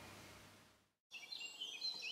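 Faint birds chirping in an outdoor nature ambience, starting about a second in after a brief moment of complete silence.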